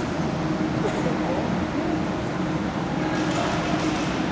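Steady, reverberant hall noise with indistinct voices in the background.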